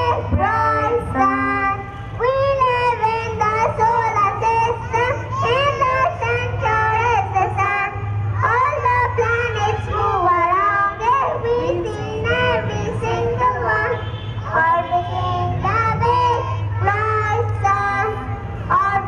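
A group of young children singing together, with backing music under the voices.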